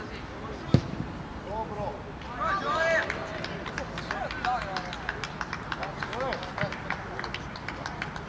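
Voices shouting and calling across a football pitch during a youth match, with one sharp thud of a kicked ball under a second in and a run of light clicks later on.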